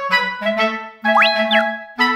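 Cheerful background music with a clarinet-like woodwind melody over a bass line, with a comic sound effect about a second in that slides up in pitch and then back down.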